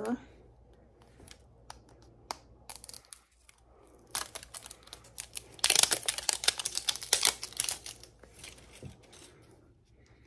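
Wrapping being peeled and torn off a surprise ball. Scattered small crinkles are followed, from about six seconds in, by two seconds of dense crinkling and tearing.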